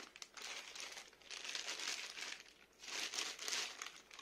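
Clear plastic packaging bag crinkling in about three bursts, each roughly a second long, as hands unwrap a laptop power adapter from it.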